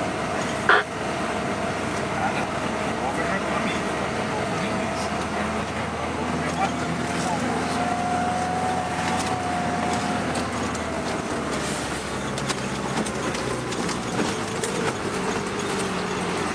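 Lada Niva running along a dirt road, heard from inside the cabin: steady engine and tyre noise with a thin whine that rises a little in pitch in the middle. A single knock sounds about a second in.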